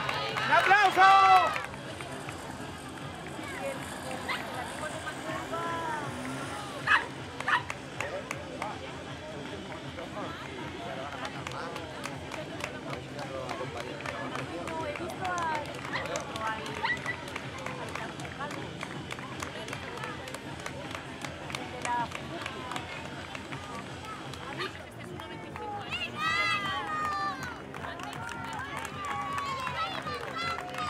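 Road-race street sound: runners' footsteps patter on the asphalt over a steady background of spectators' voices. Loud shouting comes in the first couple of seconds and again near the end. Two short loud calls come about seven seconds in.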